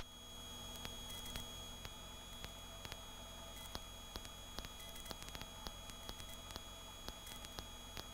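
Faint steady electrical hum and hiss with a few soft ticks, the quiet of a cockpit intercom or radio audio feed between calls, with no rotor or engine noise coming through.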